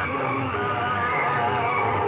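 Music played very loud through a rig of horn loudspeakers, harsh and distorted, with wavering high tones over a dense low band.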